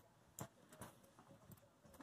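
Near silence, broken by a few faint, irregular clicks.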